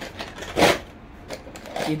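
Plastic bangle boxes being handled and opened: a short scrape about half a second in, then a few light clicks of the cases.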